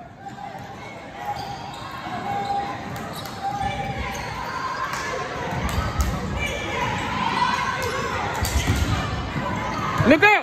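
A basketball being dribbled on a hardwood gym floor, a run of sharp bounces mostly in the second half, over the murmur of spectators' voices in a large gym.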